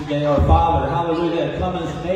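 Speech only: a man's voice talking.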